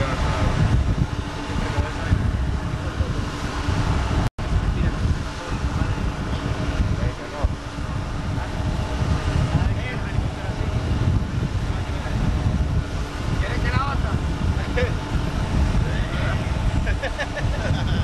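Wind rushing over the microphone on a boat under way on choppy water, a steady, fluttering low rumble. The sound drops out completely for an instant about four seconds in.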